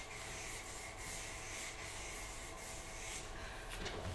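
Black marker pen rubbing across brown paper as a line is drawn, a faint steady scratching.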